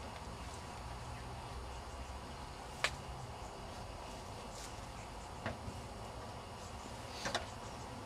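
A few sharp clicks and knocks from beekeeping equipment being handled on a wooden hive: one crisp click about three seconds in, then lighter knocks a little after five seconds and again near seven seconds, over a steady low outdoor rumble.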